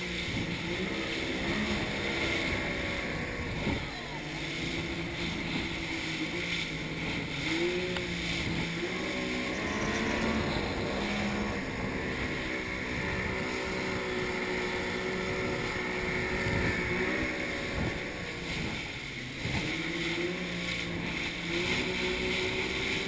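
Outboard engine of a rigid inflatable boat running hard at sea, its note rising and falling again and again as the revs change over the waves. Rushing water, spray and wind run underneath.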